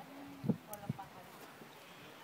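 Two soft knocks, about half a second and a second in, with faint voices in the background.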